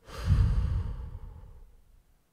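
A man's long, deep exhale close into a microphone, the breath rumbling on the mic at first and then trailing off over about a second and a half.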